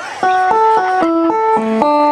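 Live band music: after a brief lull, an instrumental run of quick stepped notes, about four a second, comes in a moment after the start.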